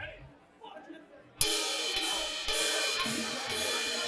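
Live rock band starting a song: after a brief lull, a cymbal crash about a second and a half in, then drum-kit cymbals struck about twice a second and left ringing over a held guitar chord, an intro that leads straight into the song.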